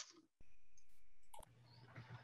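Faint clicks, one at the start and one about a second and a half in, over a quiet low hum that cuts in for about a second.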